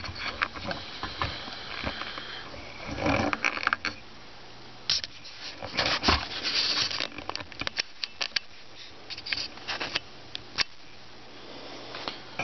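Handling noise: scattered clicks, light knocks and rustling, with a faint steady low hum underneath.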